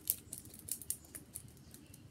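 Faint, scattered light clicks and rustles of wired earbuds and their tangled cord being handled and pulled at while untangling.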